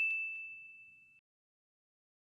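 A bell-like ding sound effect, added in the edit along with a pop-up graphic, rings out once as a single clear tone and fades away over about a second. It is followed by dead silence.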